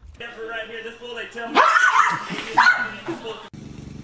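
A dog whining and yelping, loudest in two cries about halfway through, with a person's voice mixed in.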